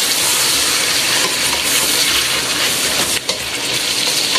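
Chicken pieces, red peppers and cubed potatoes sizzling in hot olive oil in a stainless steel pot as a wooden spoon stirs them. The sizzle is steady, dipping briefly about three seconds in.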